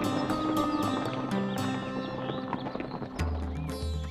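Cartoon sound effect of horses' hooves galloping in a steady clip-clop rhythm, over background music. About three seconds in, the music changes and a deep bass note comes in.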